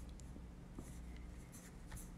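Faint taps and rubs of fingers on a laptop's keys and touchpad, a few soft clicks spread over a low steady hum.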